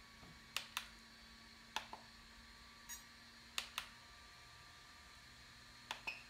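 Controls of a pistol-grip RC radio transmitter clicking as they are pressed during model setup, in short clicks, mostly in pairs about a fifth of a second apart, over a faint steady hum.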